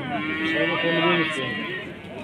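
A cow mooing: one long call that fades out near the end.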